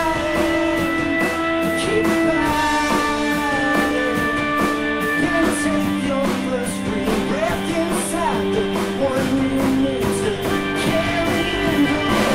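A live rock band playing: electric guitar, bass guitar, drum kit and Hammond keyboard, with held chords shifting every second or two over a steady cymbal beat.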